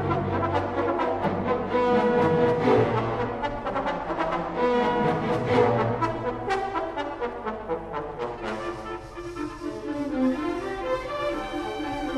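Youth symphony orchestra playing a modern classical concert piece in sustained chords; about two-thirds of the way through it grows quieter and the texture changes.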